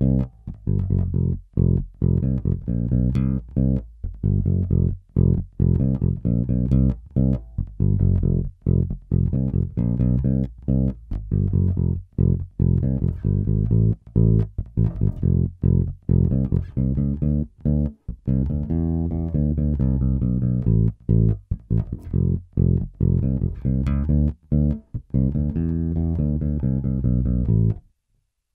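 Warwick Rock Bass Corvette electric bass played solo with the fingers, on the front (neck) pickup alone with the bass knob fully up and the treble at half. It plays a steady bass line of short, clipped notes with small gaps between them.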